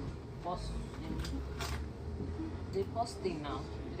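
Low, steady rumble inside a train carriage, with faint voices and a few small clicks over it.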